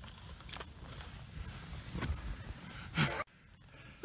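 Skis sliding through deep powder snow as a skier passes close, over a low rumble on the microphone. There is a sharp click about half a second in and a louder rush of snow around three seconds, and then the sound cuts off abruptly.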